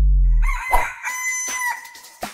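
A cartoon rooster crow sound effect: one long cock-a-doodle-doo held at a fairly steady pitch, starting about half a second in. Before it, a low note dies away.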